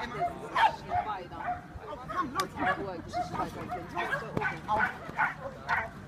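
A small dog barking repeatedly in short, high yips as it runs an agility course, coming about twice a second in the second half.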